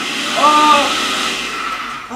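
Countertop electric blender running, a loud steady whirring that eases off slightly toward the end, with a man's short cry about half a second in.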